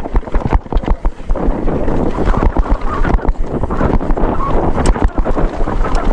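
Mountain bike descending dry dirt singletrack at speed: wind buffeting the microphone over the rumble of tyres on dirt, with rapid knocks and rattles from the bike over the bumps.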